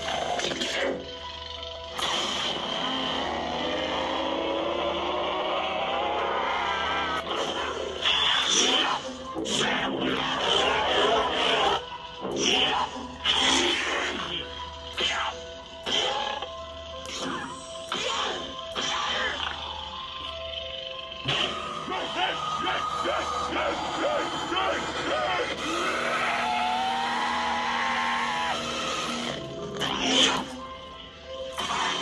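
Lightsaber soundfont (Zombie Kyber) playing from a Proffie-board saber's speaker: a steady electronic hum, swelling and gliding up and down in pitch as the blade is swung, with several sharp clash hits in the middle.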